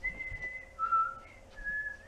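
A person whistling a short phrase of four notes: a long high note, a lower note, a brief high note, then a held middle note.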